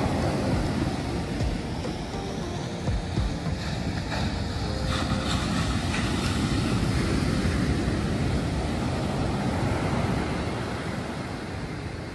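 Ocean surf breaking and washing up a sandy beach, a continuous rush that swells to its loudest midway and eases near the end.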